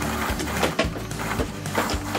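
Anchor trolley line being pulled by hand through a small pulley on a kayak's bow, rubbing and scraping in a few short strokes, with background music underneath.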